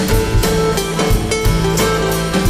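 Live rock band playing: strummed acoustic and electric guitars and bass over a steady drum-kit beat, with no singing.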